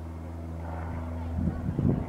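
A steady low mechanical drone, an engine-like hum with a few overtones. Gusts of wind buffeting the microphone come back in the last half second.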